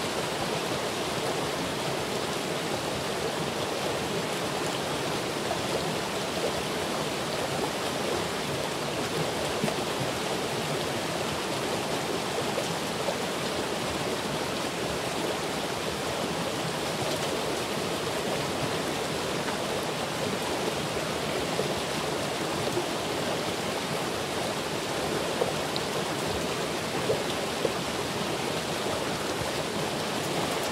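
A stream of running water rushing steadily, an even noise that does not let up, with a couple of brief ticks late on.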